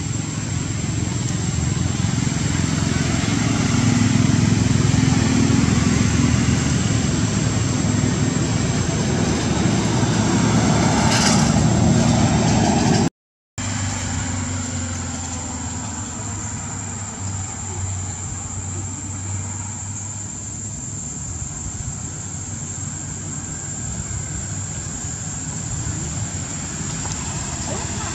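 A steady low engine-like rumble runs throughout, louder in the first half, with a faint constant high whine above it. The sound drops out for a moment about 13 seconds in.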